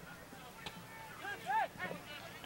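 Distant shouts from soccer players and sideline spectators, a few short calls near the end, with a faint knock about two-thirds of a second in.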